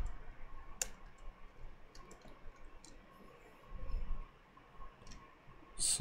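A few scattered, quiet clicks from a computer mouse and keyboard as files and code are handled in an editor, with a soft low thump of movement about four seconds in.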